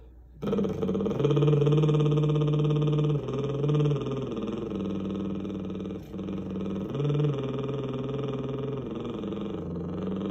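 A man's voice singing a slow melody without words, starting about half a second in, holding each note for a second or so before stepping to the next, with a short break for breath about six seconds in.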